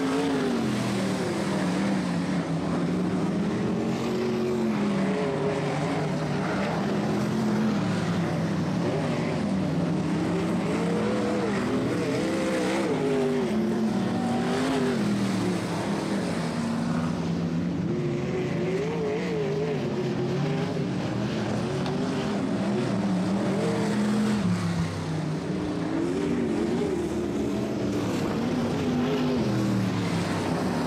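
Vintage winged sprint car engines running laps of a dirt oval. The engine note rises and falls every few seconds as the cars accelerate down the straights and back off for the turns.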